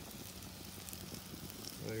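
Thick top sirloin steaks sizzling on a Santa Maria grill grate over a red oak fire: a steady, faint hiss with scattered small pops and crackles.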